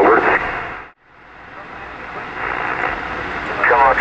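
Static hiss from an Elecraft K3 transceiver's speaker on 2-metre single sideband. The audio cuts out briefly about a second in, then the band noise builds back up with a weak voice buried in it, until a faint sideband voice comes through near the end.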